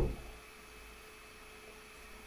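Near silence: quiet room tone with a faint steady electrical hum, just after a man's voice trails off at the very start.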